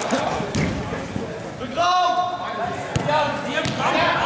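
Players shouting to each other during an indoor football game, with a few sharp thuds of the ball being kicked on the turf.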